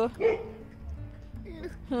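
A young girl crying: a short sob right at the start, a quieter stretch with small catches of breath, then her crying voice starting up again at the end.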